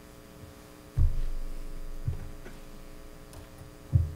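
Steady mains hum in the microphone sound system, broken by a loud low thump about a second in, a smaller one around two seconds and another near the end.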